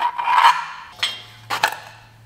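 A short scraping rub, then a few sharp clicks and knocks, as a hand tool and parts are worked on a power steering pump bracket and pulley.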